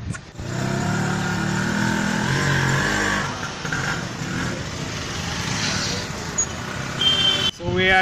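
Hero Maestro scooter's small single-cylinder engine running as the scooter pulls away. It is louder for the first three seconds, then settles lower and quieter.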